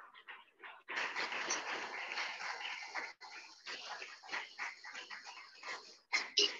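Audience applauding, starting about a second in and thinning out toward the end.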